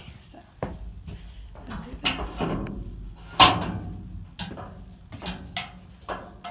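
Knocks and clatter inside an empty horse trailer, with one loud bang about three and a half seconds in.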